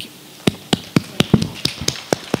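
Sparse applause: a few people clapping, sharp separate hand claps at about four to five a second, starting about half a second in.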